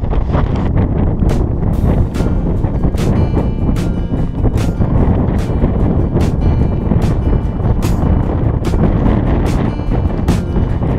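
Strong wind buffeting a GoPro action camera's microphone in a heavy low rumble. About a second in, background music with a steady beat comes in over it.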